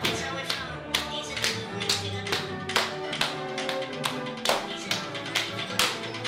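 Two people clapping each other's hands in a hand-clap dance routine, with sharp claps about two a second, over a song with a steady beat.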